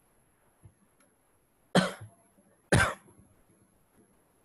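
A man coughs twice, two short loud coughs just under a second apart near the middle.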